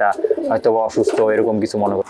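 Domestic pigeon cooing, a few short coos repeated one after another.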